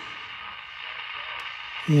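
Zenith 5-S-127 tube radio receiver powered up, its speaker giving a steady hiss of static with only faint hum.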